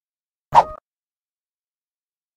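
A single short pop, an editing sound effect that goes with the channel's neon play-button logo appearing, about half a second in.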